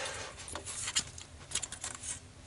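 Light clicks and rattles of hands handling a CPU cooler's fan and heat sink assembly inside a metal desktop PC case: a few short knocks scattered through, with small clusters near the middle and towards the end.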